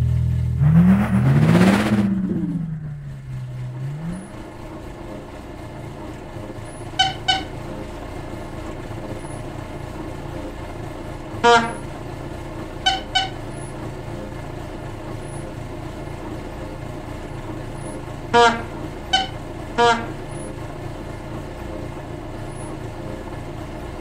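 A car horn giving short toots, some in quick pairs and some single, over a steady low engine rumble.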